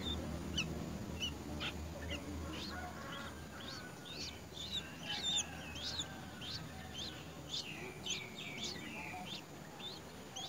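Bulbul nestlings cheeping at the nest as the adult feeds them: many short, high, thin chirps that drop in pitch, coming fastest around the middle.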